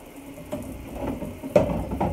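Dishes and pans clattering and knocking together as they are handled in a kitchen sink, with one sharp knock about a second and a half in.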